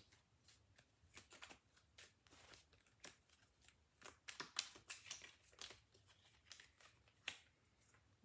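A tarot deck being shuffled and handled by hand: faint, irregular flicks and rustles of the cards.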